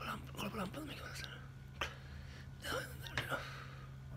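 A man's quiet mumbling and whispering in short fragments over a steady low hum, with one sharp click a little under two seconds in.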